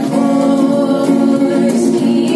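A girl and a boy singing a Bollywood song together in long held notes, with an electric guitar accompanying them.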